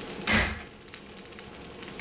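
A single heavy whack as a piece of fresh ginger is struck with the flat of a cleaver on an end-grain wooden cutting board, crushing it along its grain. Food keeps frying faintly in a wok underneath.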